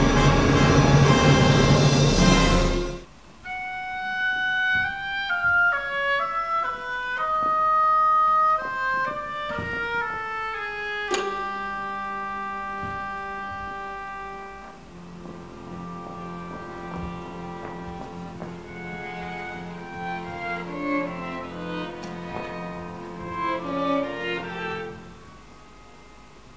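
Orchestral music: a full, loud passage cuts off about three seconds in, giving way to a quieter solo melody over held notes, with a repeated low note pulsing underneath in the second half.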